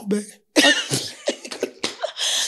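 Two women laughing hard in breathy, cough-like bursts, starting about half a second in.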